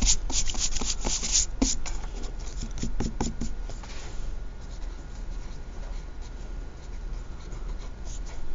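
Pen writing on a sheet of paper, mixed with a hand rubbing and sliding over the paper. It is busy with quick scratchy strokes for the first three or four seconds, then goes fainter.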